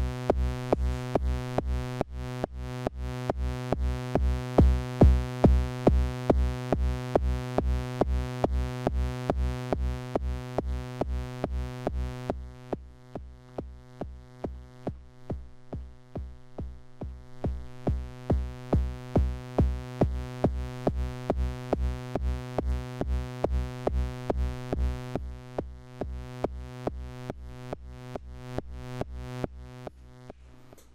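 Eurorack synthesizer patch: a sustained, buzzy drone over a steady kick drum at about two to three beats a second. The drone dips in level on every kick as the Cosmotronic Messor compressor ducks it, a pumping effect. About twelve seconds in the bright upper part of the drone falls away and the pulsing stands out more, before the top returns near the end.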